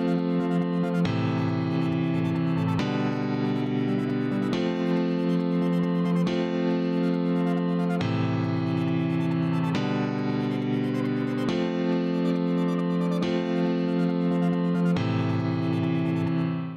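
Grand piano instrument in FL Studio Mobile playing back a looped progression of sustained three-note chords on white keys, moving to a new chord about every 1.7 seconds, once per bar at 138 BPM.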